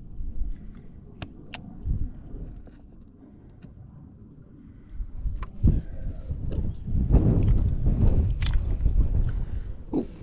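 Footsteps over shell-strewn rocks, with a few sharp clicks early on and a low rumble of wind and handling on the microphone that grows louder for the last few seconds.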